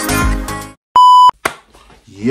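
Electronic background music cutting off, followed by a single loud, steady, high-pitched electronic beep lasting about a third of a second.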